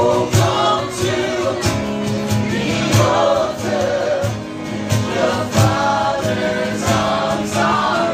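Live gospel worship song: a male lead singer with a group of backing singers, over band accompaniment with a steady beat.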